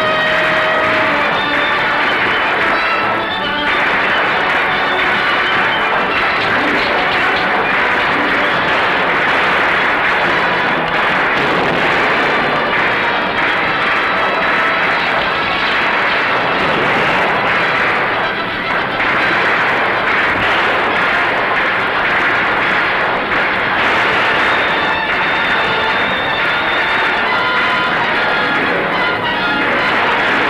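Orchestral film score playing loudly over battle sound effects of gunfire and explosions.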